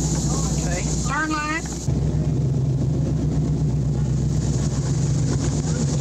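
Motorboat engine idling, then running louder from about two seconds in as the boat pulls away from the dock.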